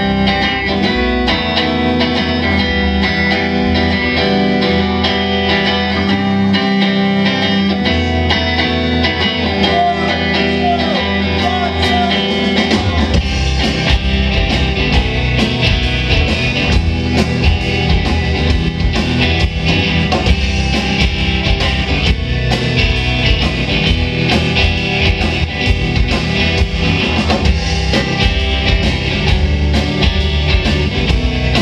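A live rock band playing: electric guitars, bass guitar and a drum kit. The low end grows heavier and more rhythmic about thirteen seconds in.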